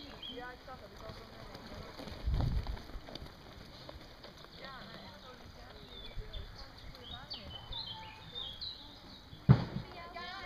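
Outdoor ambience of faint, distant voices murmuring and birds chirping. There is a low rumble about two seconds in and a single sharp knock near the end.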